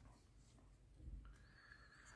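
Near silence: room tone, with faint handling of a thermal scope about a second in and a faint thin high tone held for about a second in the second half.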